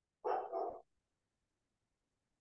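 A dog barking briefly, two quick barks close together.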